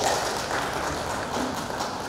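Applause from the assembly members greeting the adoption of a bill, steady and slowly fading.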